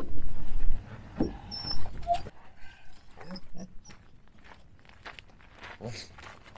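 A dog whining in a few short, pitched cries, over the rustle of a fabric windshield cover being pulled off. A loud low rumble, like wind on the microphone, fills the first second.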